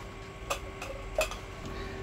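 Two light, sharp clicks of hard plastic about a second apart, from reusable plastic ice cubes and their bowl being handled, over a low steady hum.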